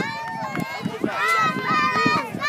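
Shouting voices of spectators and coaches, carrying on the cheering; no other sound stands out.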